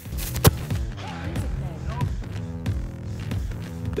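A single sharp thump about half a second in, a foot striking a football on a field-goal kick, over background music with pitched, steady notes.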